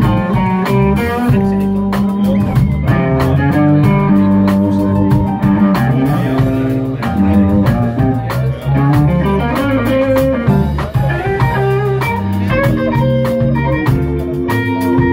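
Electric blues guitar played live, a single-note lead line with bent notes over a bass-heavy band backing.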